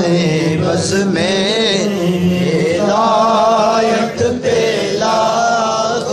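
A male reciter chanting a devotional Urdu salam (naat) in long, wavering melodic phrases. A steady low note is held beneath the voice for roughly the first half.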